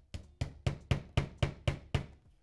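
Hammer tapping a name plate onto a wall: eight quick, even strikes, about four a second.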